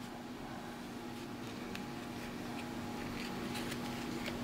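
Steady low mechanical hum of room equipment, with a few faint soft clicks as small scissors snip open a leathery ball python eggshell to widen the cut after hatching.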